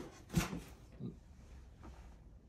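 Handling noise: a short knock about half a second in, then two fainter knocks, as the uncowled outboard motor is held and turned by hand; the engine is not running.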